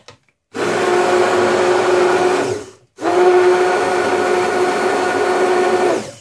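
Electric stick blender running in a plastic beaker of liquid soap mixture, mixing in the just-added liquid soap. It runs steadily for about two seconds, stops briefly, then runs again for about three seconds.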